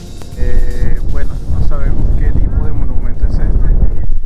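Background music stops about half a second in. Heavy wind rumbles on the microphone, with people's voices talking through it.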